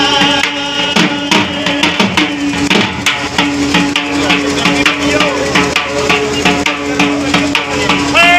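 Dhol drum beaten by hand and stick in a steady folk rhythm, over a continuous held tone from another instrument.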